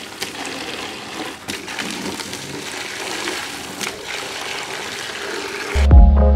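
Water from a garden hose splashing into a plastic laundry basket: a steady rush with a few small knocks. Loud music with a beat starts just before the end.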